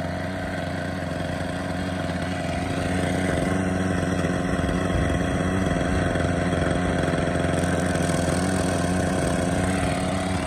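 Thunder Tiger Raptor 30 nitro RC helicopter's small glow engine running steadily at idle on the ground, spinning the rotors, a little louder from about three seconds in.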